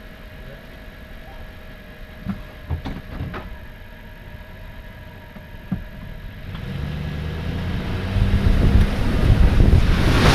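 Chevrolet Silverado pickup engine idling with a few light knocks, then revving up from about six seconds in as the truck pulls forward. It grows louder into a rush of mud and water splashing against the truck near the end.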